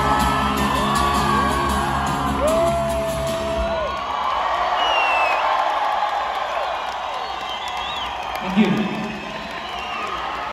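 Concert crowd cheering and whooping over the last sustained chord of an acoustic song, which stops about four seconds in; the cheering carries on, with a whistle about five seconds in and a loud yell close to the microphone near the end.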